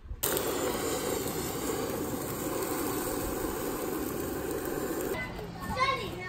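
A steady, dense rushing noise that stops abruptly about five seconds in, followed by a child's voice near the end.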